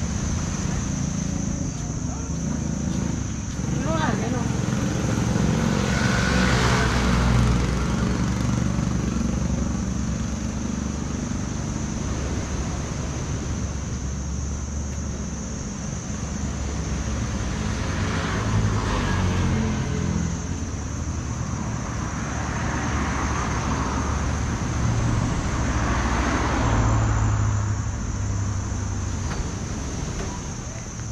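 Street traffic: motor vehicles pass one after another over a steady low engine rumble, with noticeable pass-bys about six seconds in, then around eighteen, twenty-two and twenty-six seconds.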